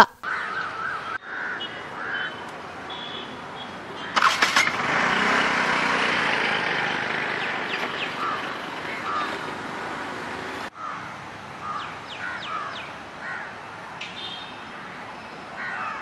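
Outdoor ambience with birds chirping. About four seconds in, a louder steady noise like a passing vehicle rises, slowly eases and cuts off suddenly near eleven seconds.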